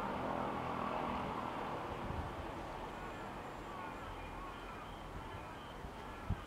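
A vehicle passing out of view, a broad rumble that swells to its loudest about a second in and then slowly fades, with faint high chirps in the second half.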